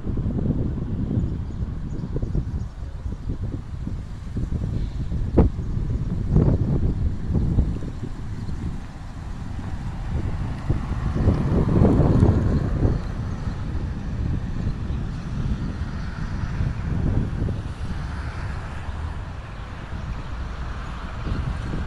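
Wind buffeting a phone's microphone as a low, irregular rumble that comes and goes in gusts, strongest about twelve seconds in. One sharp click about five seconds in.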